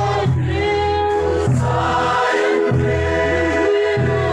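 A crowd of men and women singing a Mizo hymn together, many voices holding long notes.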